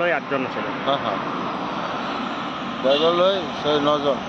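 Short phrases of a man's speech over a steady drone of road traffic.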